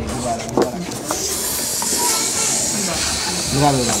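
Air hissing steadily out of an inflated balloon into a plastic water bottle, starting about a second in. The balloon's air pressure is driving the water in the bottle out through a straw.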